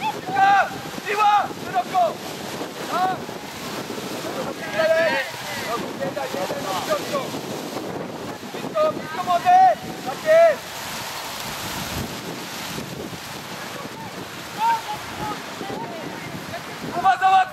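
Wind buffeting the microphone in a steady rush, with high-pitched shouts and calls from players on a football pitch, loudest in a cluster about nine to ten seconds in.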